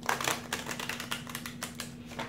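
Tarot cards being handled by hand: a quick, irregular run of papery clicks and slides, loudest at the start.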